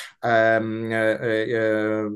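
A man's voice holding a long, drawn-out hesitation vowel (Polish "yyy") at an almost unchanging pitch for nearly two seconds, a filled pause between sentences.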